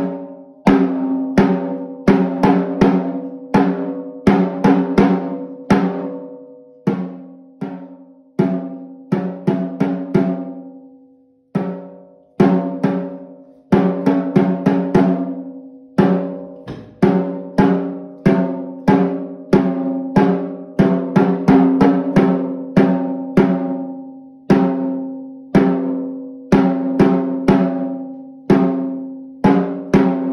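Snare drum struck with wooden sticks in a beginner's solo piece: single strokes a few a second in a stop-and-start rhythm, each leaving a pitched ring, with a pause of about a second a third of the way in.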